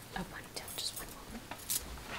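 Bangle bracelets on a wrist clinking lightly as the hand moves, a few small clicks with one sharper, brighter clink near the end.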